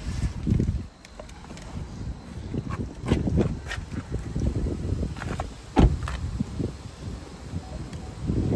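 Handling and rustling noise with scattered knocks as someone climbs out of a 2023 Buick Encore GX, then the car door shut with a single sharp thump a little before six seconds in, the loudest sound here.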